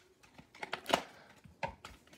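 Hands crinkling and tearing open the plastic wrapper of a trading card pack: a few short, sharp crackles, the strongest about a second in.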